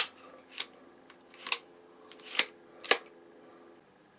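Adjustable AR-15-type stock of a Junxing Drakon compound crossbow being slid out through its lock positions: a series of about five sharp clicks spread over three seconds, the first the loudest.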